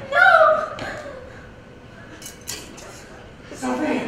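Stage performers' voices: a short exclamation at the start and speech again near the end, with a few faint knocks in the quieter stretch between.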